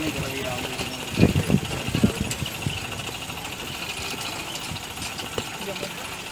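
Steady mechanical whirring rattle of a four-seat pedal surrey bike's chain and wheels rolling along a paved path, with a few louder bumps about a second in.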